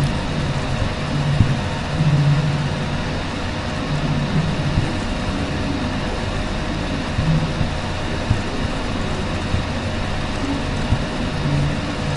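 Steady background noise with no speech: an even hiss over a low hum that swells and fades every few seconds.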